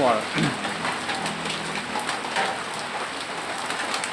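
Steady rain falling on corrugated metal roofing, with scattered sharp ticks of single drops.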